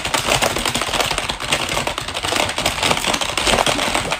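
Rapid, continuous typing on a computer keyboard: a dense clatter of keystrokes with no pauses.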